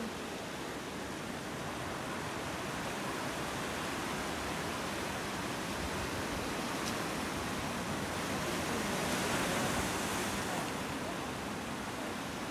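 Ocean surf washing over the rocks and sand below, a steady rushing that swells briefly about three quarters of the way through.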